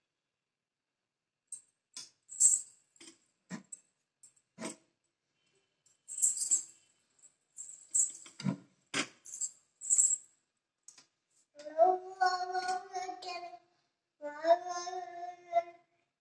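A string of irregular bright metallic clinks and jingles, a dozen or so separate strikes over about ten seconds, like small metal objects at a puja shrine being struck or shaken. Near the end a young child sings a few held notes.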